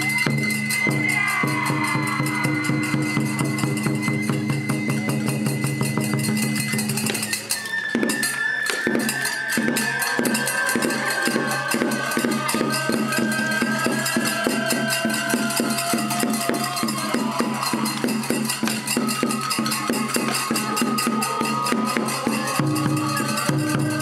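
Traditional kagura festival music: a taiko drum beating a steady rhythm with other percussion, under a high wind-instrument melody. The melody holds one long high note at first, then after a brief break about seven seconds in moves through gliding phrases over quicker, denser beats.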